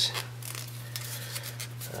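Scissors snipping through a rubber bicycle inner tube, with faint handling of the rubber, over a steady low hum.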